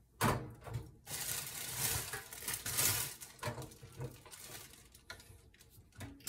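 Toaster oven being loaded by hand: a sharp knock about a quarter second in as the door or rack is handled, then a couple of seconds of rustling and a few lighter knocks.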